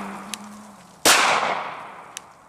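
Glock 19 9mm pistol firing a single shot about a second in, its report dying away over the following second. The tail of the previous shot is still fading at the start.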